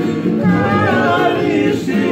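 A group of men singing a Tongan song together in harmony, with strummed acoustic guitars and ukuleles.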